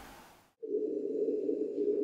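A steady low hum that cuts in abruptly after a moment of dead silence, about half a second in, and holds level, with faint thin high tones above it.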